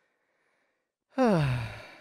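A man's voiced sigh, starting about a second in, one continuous sound that falls in pitch and fades away.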